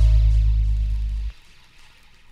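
A deep held bass note in a breakbeat and dub track, fading slightly before it cuts off suddenly about a second and a half in.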